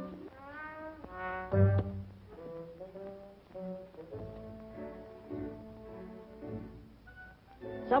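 Orchestral film underscore with horns: held notes and a few sliding phrases, swelling loudest about a second and a half in.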